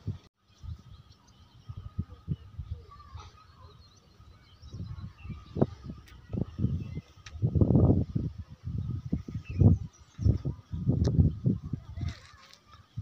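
Wind buffeting the phone's microphone in irregular low gusts, growing louder in the second half, with faint bird calls in the background.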